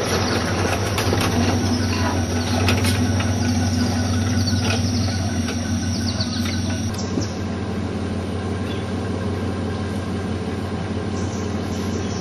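A four-wheel-drive vehicle's engine drones steadily under loads of short knocks and rattles as it bumps along a rutted dirt track. The rattling thins out about halfway through, leaving mostly the steady drone.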